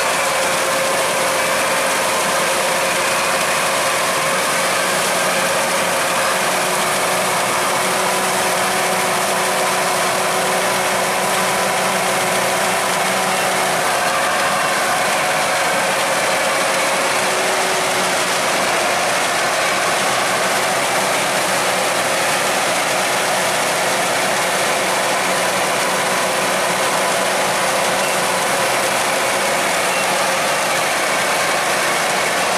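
Kubota DC-108X rice combine harvester at work cutting and threshing rice, its diesel engine running steadily under a dense, continuous mechanical clatter from the harvesting and threshing gear, with a few faint steady whining tones.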